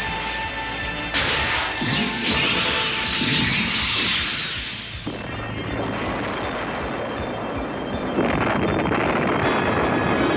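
Cartoon battle sound effects over dramatic background music: a sudden crashing sword strike about a second in that hisses and fades over a few seconds, then a loud explosion from about eight seconds in.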